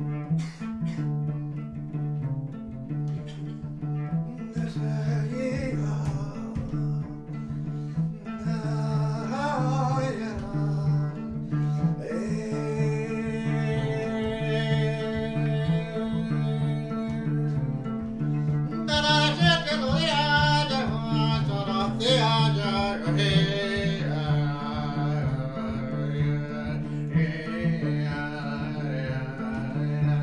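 Solo cello playing a steady, repeating figure of low plucked notes, with a higher wavering melodic line over it. The upper line grows louder and busier about two-thirds of the way in.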